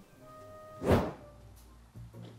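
Quiet background music with one loud, short swoosh-like hit about a second in, trailing off into a low rumble. It sounds like an editing transition effect.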